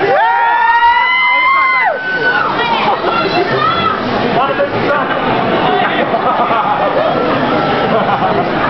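Two high voices slide up together and hold a note for about two seconds, then break off, followed by a mix of voices and crowd noise in a live hall.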